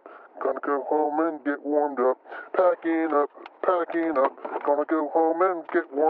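A voice talking in quick, unbroken phrases, thin and narrow-band like audio over a radio; no words can be made out.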